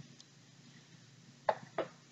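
Two short knocks a third of a second apart, about a second and a half in: an aerosol whipped cream can set down on a countertop, over a faint steady room hum.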